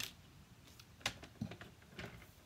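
A paper trimmer being handled as a strip of cardstock is cut: a few short, sharp clicks, one at the start, one about a second in and one at the end, as the cutting arm and blade are set and moved.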